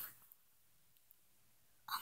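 Near silence: faint room tone between soft, whispery speech. A short breathy 'Oh' begins near the end.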